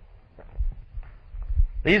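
A pause in a man's speech holding three soft low thumps, then his voice resumes near the end.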